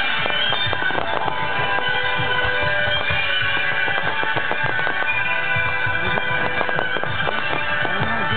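Music playing alongside a fireworks display, with many quick pops and bangs from bursting fireworks throughout.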